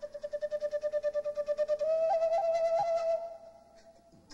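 Solo flute playing one breathy note, fluttering rapidly at about a dozen pulses a second. Near the halfway point the note steps slightly higher and is held, with a few short upward flicks, then fades out about three seconds in.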